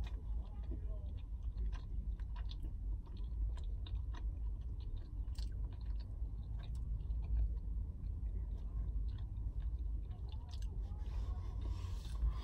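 A person chewing a mouthful of sausage and bacon flatbread pizza close to the microphone, with irregular small wet clicks and crunches.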